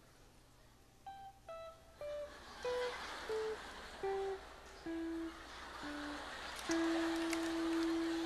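Electric guitar playing a slow descending run of about nine single notes, roughly one every half second, with the last note held long near the end.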